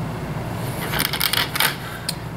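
Close handling noises of string being pulled and knotted onto a mousetrap's metal lever: a cluster of light clicks and rustles about a second in, over a steady low hum.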